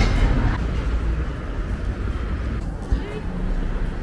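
Steady street noise with a low rumble of road traffic.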